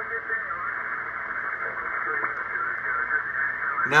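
Elecraft K3S shortwave transceiver's speaker playing 20-metre band audio: steady receiver hiss confined to a narrow voice passband, with a faint single-sideband voice in it.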